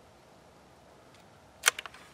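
Bolt of a single-shot bolt-action .22 rifle being worked closed: one sharp metallic click about three-quarters of the way in, followed quickly by three smaller clicks.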